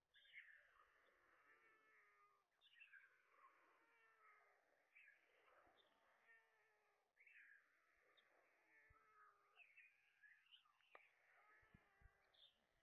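Faint begging calls of white stork chicks being fed at the nest: many short calls that rise and fall, overlapping and repeating every second or so.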